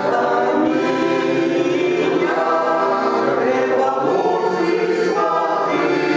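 Mixed choir of men's and women's voices singing a Ukrainian folk song in harmony, with accordion accompaniment. The singing is continuous, in long held notes.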